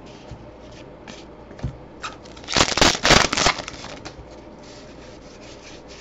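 Topps Allen & Ginter baseball cards sliding and rubbing against one another as a stack is flipped through by hand, with a loud scraping rush of cards about two and a half seconds in.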